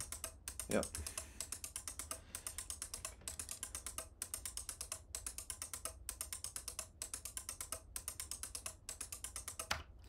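Eight-channel relay board driven by an SC129 digital I/O card, its relays clicking rapidly and evenly as a BASIC loop steps the output on from one relay to the next. The clicks come about eight a second, in runs broken by a short gap roughly every second.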